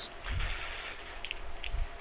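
Faint background noise heard over a telephone line, with a low rumble of handling noise and a few soft clicks.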